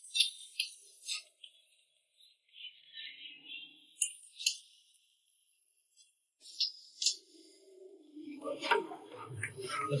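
Cleaver chopping a steamed chicken on a thick wooden chopping block: sharp chops in small clusters of two or three, with pauses between.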